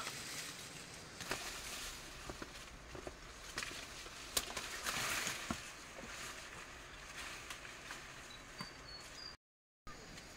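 Dry corn leaves and stalks rustling and crackling as people push through a harvest-ready cornfield, with scattered sharp snaps. The sound cuts out completely for a moment near the end.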